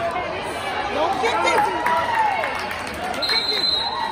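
Several spectators and coaches shouting at once during a wrestling bout, overlapping voices rising and falling, with a few soft thuds on the mat. A thin, steady high squeak comes in near the end.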